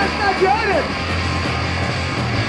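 Hardcore punk band playing fast and loud in a rehearsal room, captured on a raw cassette recording: a dense wall of distorted guitar and drums, with a shouted vocal line over it in the first second.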